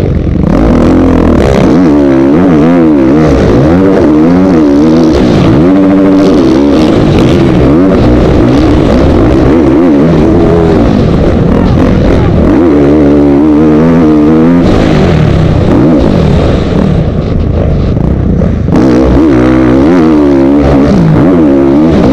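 Dirt bike engine heard up close on board, loud throughout and revving up and down over and over as the rider accelerates, shifts and backs off through the motocross track's jumps and corners.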